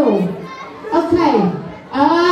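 A voice calling out twice with no clear words, each call sliding down in pitch, the second about a second after the first, over voices in a large hall.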